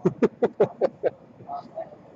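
A man laughing: about six short, rhythmic bursts over the first second that then die away.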